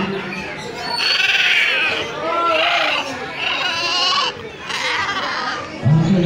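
Caged parrots calling: about four loud, wavering, bleat-like calls, each lasting under a second.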